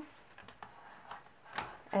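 A small scrap of paper being folded in half and creased by hand: faint rustling with a few light ticks.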